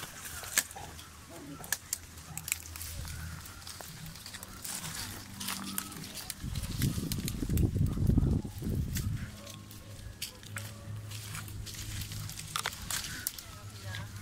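Leaves and twigs of a caimito (star apple) tree rustling, crackling and snapping against a handheld phone as a climber reaches through the branches for fruit. About seven to nine seconds in, a loud low rubbing sounds as leaves and hands brush right over the microphone.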